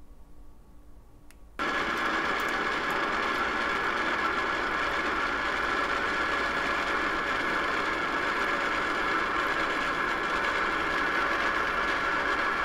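Whynter ice cream maker running, a steady mechanical hum and rattle of its motor turning the churning paddle, starting suddenly about a second and a half in. Before that there is only a faint, quiet pour.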